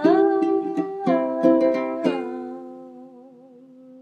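A ukulele strummed under a woman's singing voice holding long notes. The strumming stops about two seconds in, and her last note is held with a slight waver and fades away.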